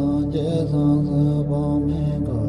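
Background music of a chanted mantra: voices holding long sung notes over a low steady drone, with small bends in pitch.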